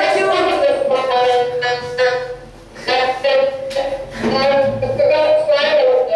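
A voice in long, drawn-out sing-song tones, in three stretches with short breaks between them.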